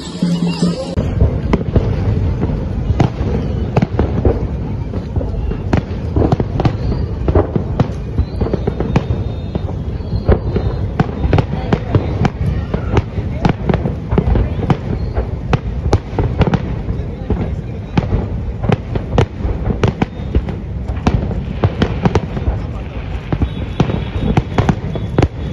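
Aerial fireworks display: after a second of music, a dense, irregular barrage of sharp bangs and crackles, several a second, over a continuous low rumble.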